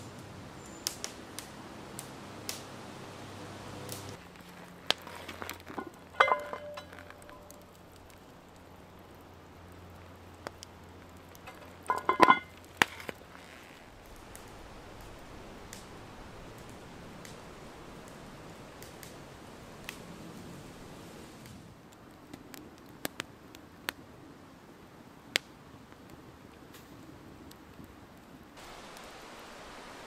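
Quiet woodland ambience with scattered small clicks and cracks, and two brief louder sounds about six and twelve seconds in.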